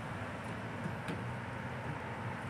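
Steady background street noise: a low hum of traffic with no distinct events.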